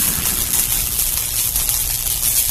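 A steady rumbling hiss from the sound-effect track of an animated outro, carrying on after a loud low impact.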